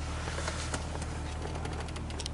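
BMW straight-six engine idling, a steady low hum heard from inside the cabin, with a few faint clicks.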